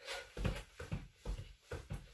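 Trainers thudding softly and quickly on a laminate floor as a person does mountain climbers, legs driving in and out in a steady run of a few footfalls a second.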